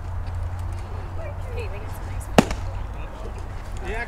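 A single sharp crack of a baseball impact about two and a half seconds in, over faint distant voices and a steady low rumble.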